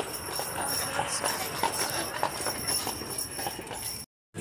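Horse's hooves clopping on the street in an irregular series of clops, as from a horse-drawn carriage going by.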